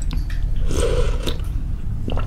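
Close-miked wet chewing of a mouthful of baso suki soup, busiest a little under a second in, with small mouth clicks, over a steady low hum.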